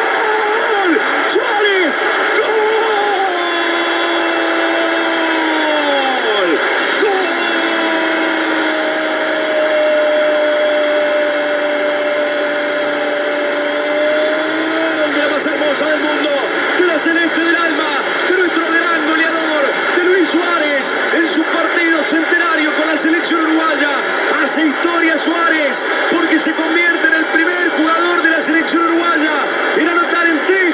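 Football commentator's drawn-out goal shout over a cheering stadium crowd: the voice falls in pitch, then holds one long note for about eight seconds. After the held note, more excited shouting follows over the crowd.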